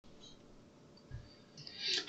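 Near silence at the start of a recording, with a faint low thump a little after a second in, then a short intake of breath just before speech begins.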